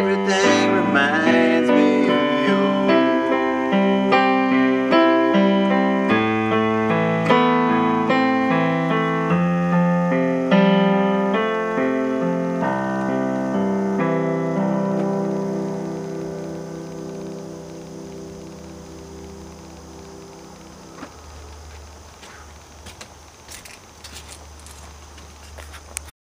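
Keyboard in a piano voice playing the closing bars of a song just after the last sung word: a run of notes, then a final held chord that fades out. It stops about five seconds before the end, leaving only faint background with a few light clicks.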